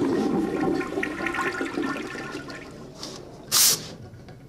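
A toilet flushing, its rush of water fading away over about three seconds. Near the end comes a short hiss from an aerosol can of Lynx deodorant spray.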